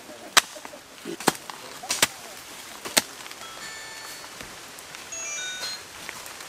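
A few sharp knocks about a second apart, then a light scatter of short, high, chime-like tones over a steady background hiss.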